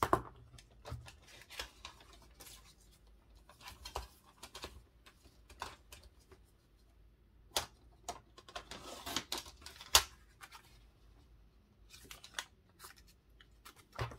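A sheet of blue paper being handled on a craft mat: scattered paper rustles, taps and small clicks, with a longer rustle about nine seconds in and a sharp click about ten seconds in.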